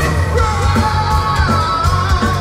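Live hard rock band playing through a festival PA, heard from the crowd: a singer holds long, gliding notes over distorted guitars, bass and steady drum hits.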